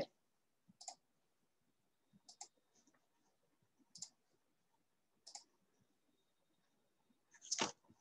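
Faint computer mouse clicks, four of them spaced about a second and a half apart, then a louder click near the end, with near silence between.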